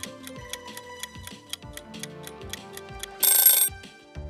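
Background music with an evenly spaced ticking from a quiz countdown timer. About three seconds in comes a short, loud, ringing alarm-like effect, the timer running out.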